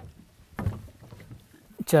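Footsteps of boots on wooden dock planks: a couple of footfalls, the loudest just over half a second in.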